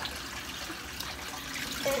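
Aquarium filter returning water into the tank: a steady trickle of running water.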